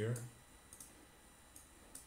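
A few faint computer mouse clicks, spaced irregularly about half a second to a second apart, over quiet room tone.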